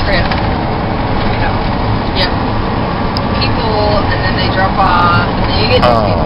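Steady engine and road rumble heard inside the cabin of a moving shuttle bus, with faint voices under it in the second half.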